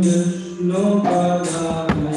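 Devotional kirtan: held chanted or sung notes that step between pitches, with metal hand cymbals struck repeatedly, and a single sharp click near the end.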